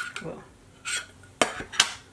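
Small round metal tin of a dry brush-cleaner sponge being handled: sharp metallic clacks of the tin and its lid, one at the start and two close together near the end, with a softer scrape in between.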